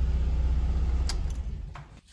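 Audi A3's 1.8-litre four-cylinder five-valve engine idling, heard inside the cabin as a steady low rumble that fades away near the end, with a single light click about a second in.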